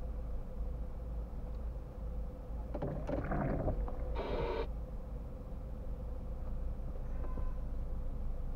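A car's windscreen wiper makes one sweep across the glass about three seconds in: a short rub, then a brief squeak on the return. Under it runs the low steady rumble of the stationary car's cabin.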